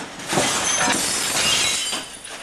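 Broken glass and debris clinking and scraping in a dense, continuous clatter, as rubble is being cleared away.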